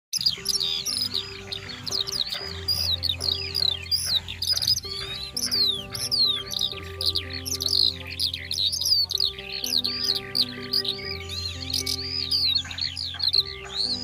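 Many small birds chirping rapidly and continuously, over soft background music of long held notes that shift every couple of seconds.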